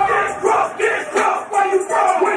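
Nightclub crowd shouting together in loud, repeated bursts about twice a second.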